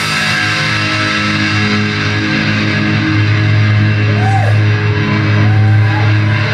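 Live hard rock band playing: distorted electric guitars and bass holding long sustained chords over a steady low bass note, with a sliding high note about four seconds in.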